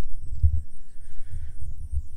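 Low, uneven rumble of wind and handling noise on a handheld phone microphone as it is carried, with a heavier thump about half a second in.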